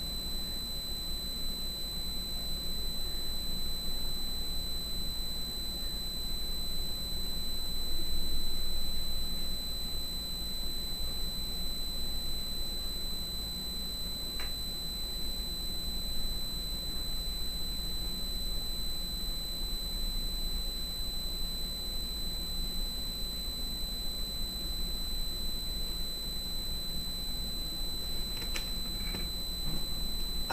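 Steady background hum and hiss with a constant high-pitched whine, typical of electrical noise picked up by a recording setup. There is one faint click about halfway through.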